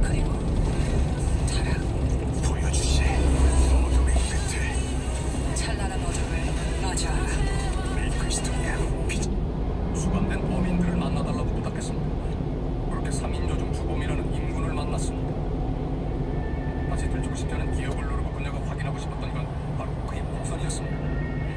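Steady engine and road rumble inside a small truck's cab while driving, with a radio broadcast of talk and music playing faintly in the cab.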